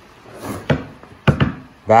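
Handling a dried coyote pelt on its wooden stretching board: a few short knocks and rustles, the loudest just past halfway.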